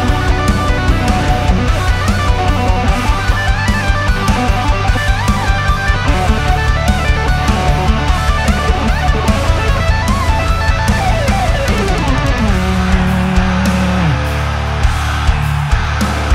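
Heavy metal instrumental: an electric guitar plays fast lead lines over a fast, steady beat. Near the end a note slides a long way down in pitch, then a low note is held.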